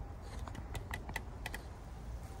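Light, irregular clicks and taps close to the microphone, about eight in two seconds over a low steady rumble: handling noise from fingers on the phone as it is adjusted.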